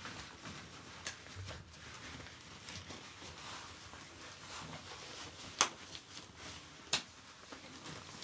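Faint rustling of a shirt and small handling noises, with two sharp clicks about five and a half and seven seconds in.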